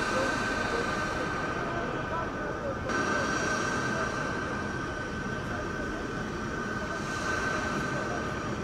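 Steady airport apron noise: a constant high whine over a low engine rumble, as a convoy of vans drives off. The sound steps abruptly about three seconds in.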